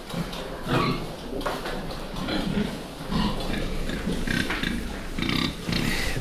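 A pen of large fattening pigs, nearly seven months old, grunting in short, irregular grunts throughout.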